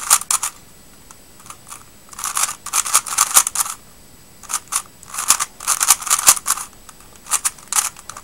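Plastic layers of a 3x3 speed cube clicking as they are turned fast, an OLL algorithm run through at speed. The turns come in several quick flurries of clicks with short pauses between them.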